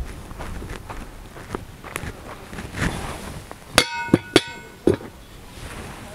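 A lidded metal cooking pot set down on a stone, its lid clanking and ringing three times in quick succession about four seconds in, with a duller knock just after. Footsteps on dry dirt come before it.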